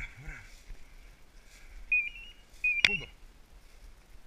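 Two short high-pitched beeps about half a second apart, the first stepping up in pitch, with a sharp snap on the second.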